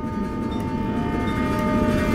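A sustained, horn-like chord of several held tones swells steadily louder over a rushing noise: a building crescendo in an animated film's score and sound design.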